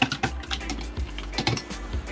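Plastic pen-style pH meters clicking and knocking irregularly against the sides of a plastic cup as they are swirled in RO water to rinse the probes.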